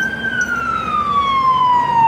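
Fire engine siren wailing: its pitch peaks just after the start, then slides slowly and steadily down.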